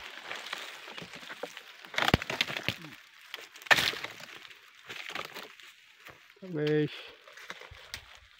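A pole-mounted harvesting chisel striking and cutting at the base of a fruit bunch on a young oil palm: two sharp cracks about two and three and a half seconds in, with smaller crackles and the rustle of fronds between.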